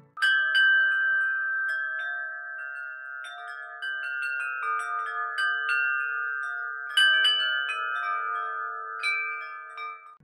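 Litu 41-inch wind chimes, their long tubes struck again and again by the wooden striker, each note ringing on and overlapping the next. A loud strike comes just after the start and another about seven seconds in.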